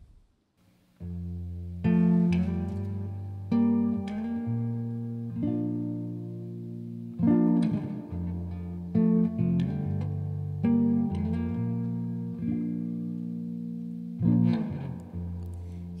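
Instrumental guitar intro to a slow song. After about a second of silence, plucked guitar chords with ringing low notes begin, and a new chord is struck roughly every two seconds.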